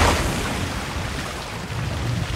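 A torrent of floodwater rushing and splashing, with a low rumble, loudest at the start and easing off.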